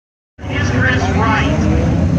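Hornet-class dirt track race cars' four-cylinder engines running in a steady low rumble as the field circles the track, cutting in abruptly a moment in.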